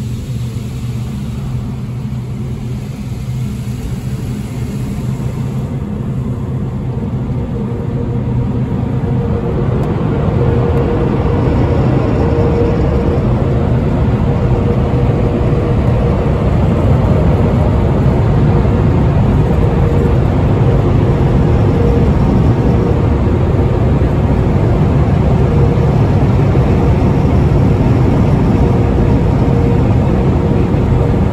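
Tunnel car wash air dryer blowers running, a loud steady rush of air with a hum in it, heard from inside the car. The noise builds over the first ten seconds or so, then holds steady.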